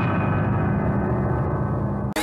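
A deep, sustained gong-like sting on the soundtrack, held at an even level with many tones layered together: a comic shock cue.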